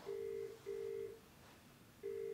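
British-style telephone ringback tone from a mobile phone while a call is placed. It is a low two-tone double ring: two short beeps close together, then a pause.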